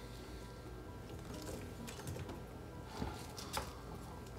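Faint crisp snapping and crackling of a raw cauliflower head being broken apart by hand into florets on a wooden cutting board, a couple of slightly louder snaps near the end. A faint music bed runs underneath.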